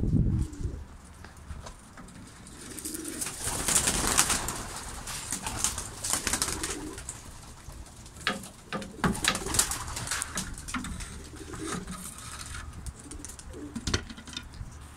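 Domestic pigeons cooing repeatedly, with scattered short sharp clicks and flutters among them.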